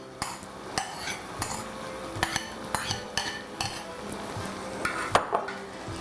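Metal spoon scraping and clinking against a ceramic bowl and a stainless steel pot as soaked glutinous rice is spooned out, in a run of irregular scrapes and knocks about one or two a second.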